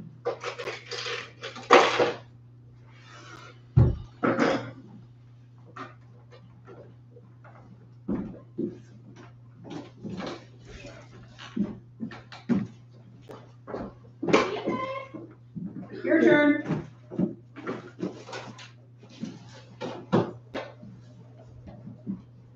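Indistinct, scattered talk from people around a large room, with a sharp knock about four seconds in and other small clicks, over a steady low hum.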